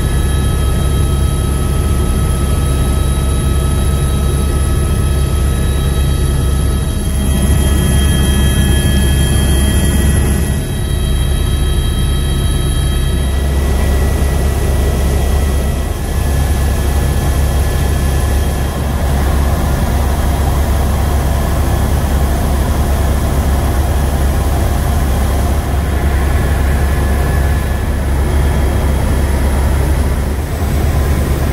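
Helicopter cabin noise in flight: a loud, steady drone of rotor and engine, with several high steady whining tones that fade out about 13 seconds in.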